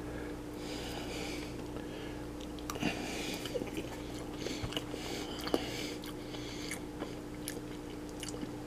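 A person chewing a mouthful of Braunschweiger, a soft liver sausage: quiet, wet mouth sounds with a few faint clicks and no crunch, over a steady low hum.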